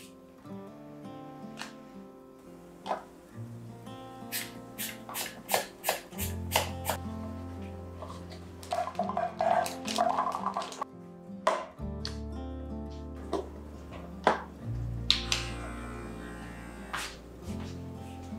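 Soft background music with held bass notes, over kitchen handling: scattered light clicks and taps, then peeled garlic cloves clattering from a bag into a clear plastic container about nine to ten seconds in, and a single louder knock a few seconds later.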